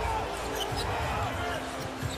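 A basketball being dribbled on a hardwood court, low thumps of the bounces over the steady noise of an arena crowd.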